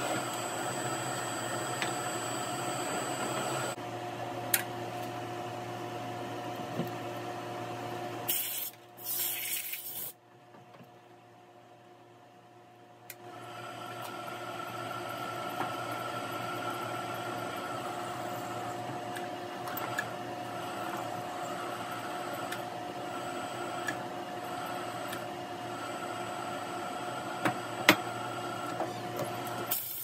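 Drill press motor running with a steady hum while drilling steel pieces held in a drill-press vise, with a few light clicks and knocks. The hum drops away for a few seconds about a third of the way in, then returns.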